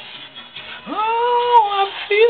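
A high singing voice scooping up into one long held note, about a second in, then falling away, over a light backing track.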